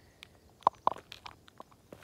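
A few short crunching steps on a gravelly dirt track, with faint ticks between them.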